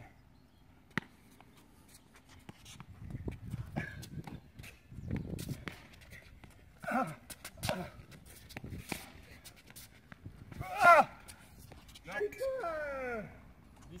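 A rally being played: sharp ball-strike knocks and footsteps scattered throughout, with short calls from the players. The loudest sound is a shout with a bending pitch about eleven seconds in, followed by a falling groan.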